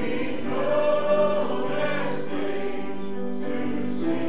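A choir singing gospel music in long held notes.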